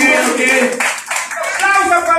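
A group of people clapping their hands, with voices over the clapping.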